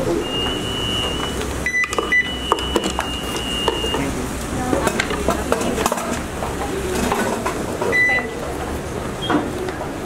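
Security screening equipment at an entrance beeping: two long high electronic tones in the first four seconds and a few short lower beeps, over the chatter and footsteps of people passing through.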